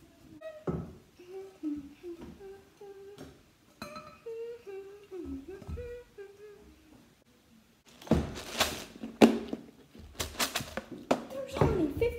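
A child humming a wandering tune in short notes, then, after a short pause, a run of loud knocks and clattering for a few seconds, as a metal cooking pot is handled.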